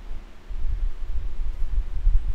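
Low, uneven rumbling noise on the microphone, starting about half a second in, with no voice over it.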